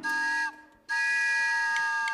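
Steam-train whistle imitation played live by the band: two chord-like toots of several pitches together, a short one and then, after a brief gap, a longer one of over a second, each sagging slightly in pitch as it ends.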